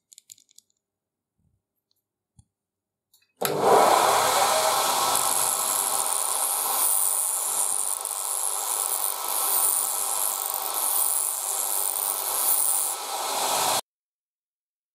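A bench grinder's wheel grinding a small steel part clamped in a hand vise: a loud, steady grinding hiss that starts suddenly about three and a half seconds in and cuts off just before the end. Before it come a few faint clicks of small metal parts being handled.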